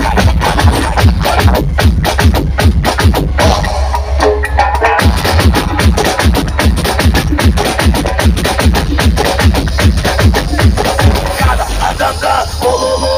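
Loud electronic dance music from a large outdoor DJ sound system, with heavy bass and a fast, dense beat. The bass thins out briefly about four seconds in and comes back about a second later.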